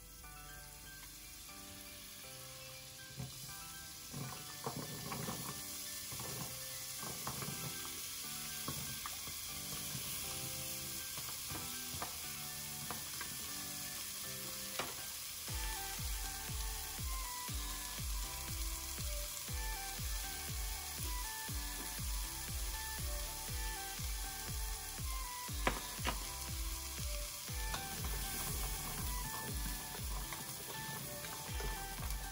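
Sliced carrots sizzling as they fry in oil in a nonstick pot, with a spatula clicking and scraping as it turns them. Upbeat background music plays underneath, and its steady beat comes in about halfway.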